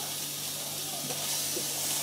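Chopped onion sizzling in hot oil in a non-stick frying pan, a steady high hiss.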